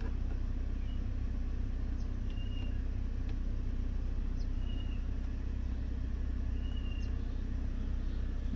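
Steady low cabin hum of the Toyota Veloz idling with its air conditioning and rear double blower running, heard from inside the car. A few faint short high chirps come through it.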